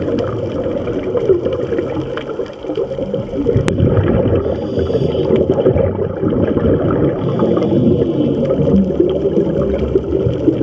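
Muffled underwater bubbling and crackling from scuba divers' exhaled regulator bubbles, heard through an underwater camera, with one sharp click about four seconds in.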